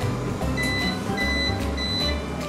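Whirlpool microwave oven beeping three times, short high beeps evenly spaced about half a second apart, signalling that its heating cycle has finished. Background music plays underneath.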